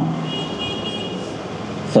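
Steady background noise in a pause between speech, with a faint high-pitched tone for about a second near the start.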